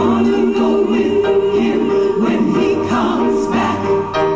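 Gospel song: a woman sings into a handheld microphone, holding long notes, with choir voices behind her.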